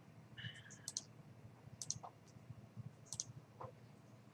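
Computer mouse clicks, three of them about a second apart, each a quick press-and-release pair, faint over room tone.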